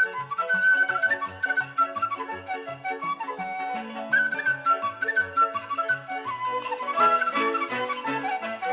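Traditional Chinese instrumental music: a dizi (bamboo flute) plays a quick, ornamented melody over a regular low bass accompaniment.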